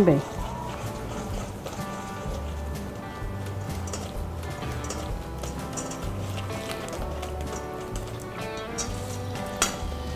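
Background music: held tones over a low bass line that changes every second or so.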